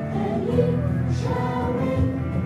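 A children's choir singing together in held notes.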